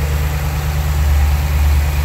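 2011 Dodge Challenger SRT8's 6.4-liter 392 Hemi V8, fitted with a K&N cold air intake, idling steadily and smoothly, heard close up over the open engine bay.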